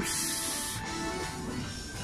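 Faint background music with thin steady tones, with a brief high hiss in the first second.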